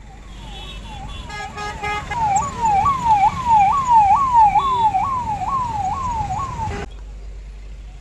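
Police vehicle siren sounding a rapid repeating wail, about two rises and falls a second, over a low rumble of traffic. It grows louder about two seconds in and cuts off suddenly near the end.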